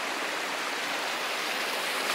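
Water rushing steadily down a concrete irrigation ditch, spilling white and foaming over a small drop.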